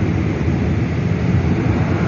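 Airplane flying overhead: a steady low rumble.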